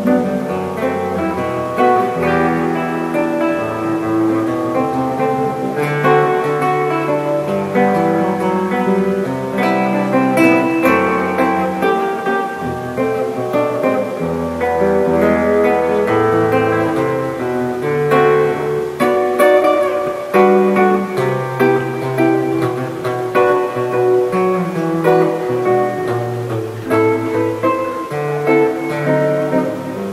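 Nylon-string acoustic-electric guitar played solo, a melodic line over changing bass notes.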